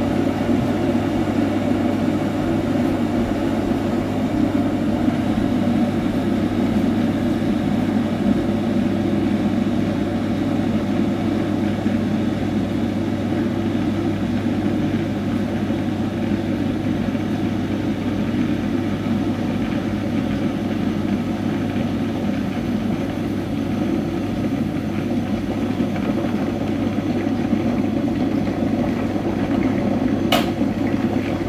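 A steady, unchanging low rumble with a constant hum underneath, like a machine or appliance running.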